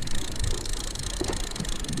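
Steady wind rumble and hiss on the microphone in open water, with no single event standing out.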